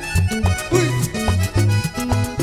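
Live vallenato band playing an instrumental passage without vocals: button accordion over a bass line of short notes, with congas and timbales.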